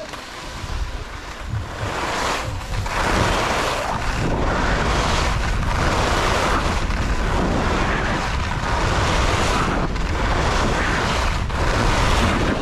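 Skis running on firm groomed snow, with wind buffeting the camera microphone. It builds over the first two seconds as speed picks up, then runs on as a steady rush that swells and fades every second or so.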